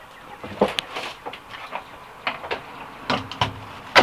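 A series of scattered light knocks and clicks, about eight over a few seconds, the loudest near the end.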